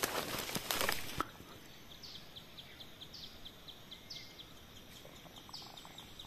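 About a second of crackling handling noise on the microphone. It breaks off suddenly, leaving faint forest background with small birds calling: a quick run of high ticks, about three a second, with a few short down-slurred notes.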